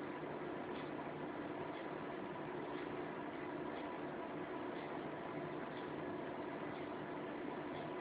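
Steady background hiss with a faint hum, and faint soft ticks about once a second.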